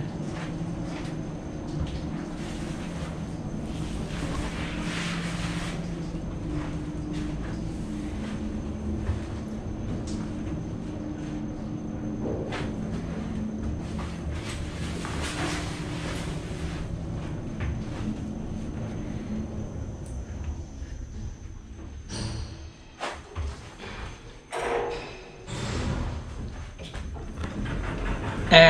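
Lift cabin of the Castello d'Albertis-Montegalletto elevator in motion, heard from inside the car: a steady running hum with a faint thin high whine that stops about three-quarters of the way through. It is followed by a few clunks and the cabin's sliding doors opening near the end.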